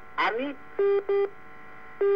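Telephone-line beeps on a live phone call: a brief snatch of a voice, then a pair of short, steady-pitched beeps about a second in.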